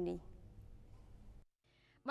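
A woman's voice finishes a word at the very start, then faint room tone with a low hum. About one and a half seconds in, there is a brief dead-silent dropout at an edit.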